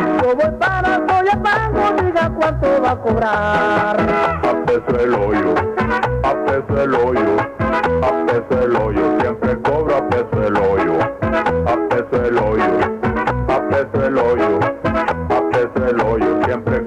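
Tropical dance music with a steady percussion beat, in an instrumental passage between sung verses.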